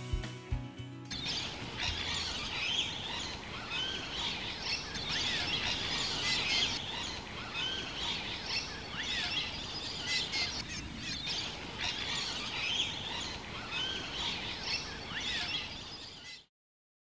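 Dense outdoor chorus of many birds chirping and calling at once, with short rising-and-falling calls repeating throughout. Background music ends about a second in.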